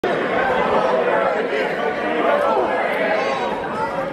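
Crowd chatter: many people talking at once, with no single voice standing out, in a large echoing hall.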